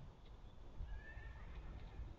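A horse whinnying once, faintly and briefly, about a second in, over a low rumble.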